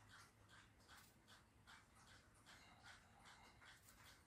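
Near silence: faint room tone with soft, regular puffs of hiss, about two or three a second.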